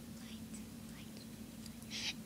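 Quiet pause in a child's talk: low room hiss with a faint steady hum, and faint whispering.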